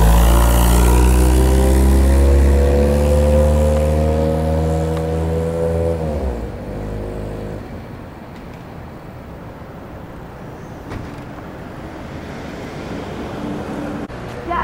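Car engine running close by, its pitch rising steadily for about six seconds as it accelerates, then dropping and fading away, leaving a quieter steady background noise.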